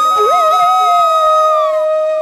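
A flute playing in background instrumental music, holding long, steady notes: a high note fades away near the end while a lower note, which slides in just after the start, carries on.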